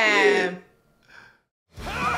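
A woman's drawn-out 'oh!' exclamation that trails off about half a second in. After a short near-silent lull, TV dialogue comes back in near the end.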